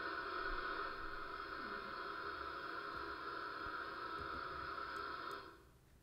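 A recorded steady mechanical drone, played over the lecture hall's speakers as the sound of today's irrigated cornfield landscape; it cuts off suddenly near the end.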